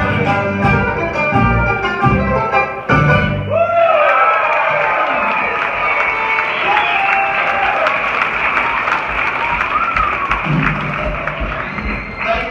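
A bluegrass band on acoustic guitar and upright bass finishes a fast tune about three seconds in. The audience then breaks into applause and cheering that carries on to the end.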